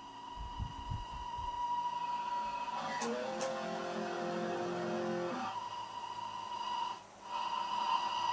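Electric guitar, a Stratocaster-style solid body, playing slow lead lines of long sustained notes, with a note bent upward about three seconds in and a short break about seven seconds in. A few low thuds come near the start.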